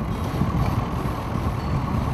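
Steady low rumble aboard a fishing boat on open, choppy water, with no voices.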